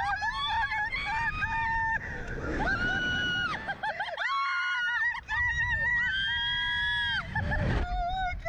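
Women riders on a Slingshot reverse-bungee ride screaming as it flings them into the air, long high-pitched screams one after another, one of them a drawn-out "oh my god". Wind rumbles on the microphone underneath.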